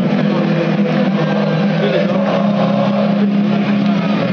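A steady, loud drone of several held low tones, unbroken throughout, with crowd voices over it.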